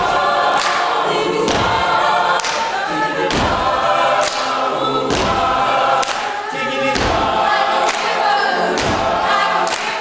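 Mixed-voice a cappella group singing an arranged pop song in close harmony over a steady percussive beat that hits about once a second.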